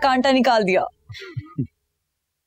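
A woman's voice for about the first second, then a few short, low, falling sounds, then silence.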